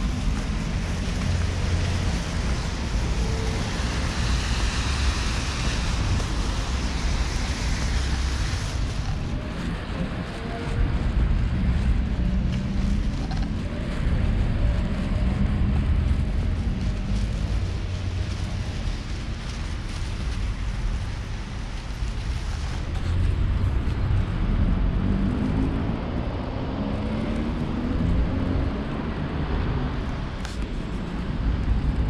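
Wind noise buffeting an action camera's microphone, with street traffic behind it and a car passing now and then.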